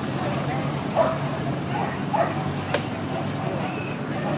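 A dog barks twice, about one second and two seconds in, over a steady murmur of people talking, with one sharp click shortly after the second bark.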